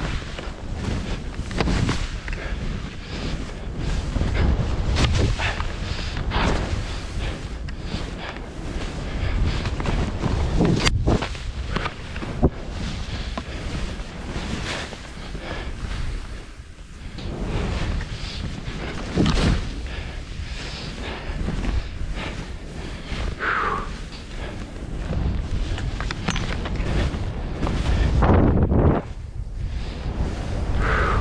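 Wind rushing over the microphone while skiing fast through powder, with the skis hissing through the snow in swells that come and go every second or two as the skier turns. There is one sharp click near the middle.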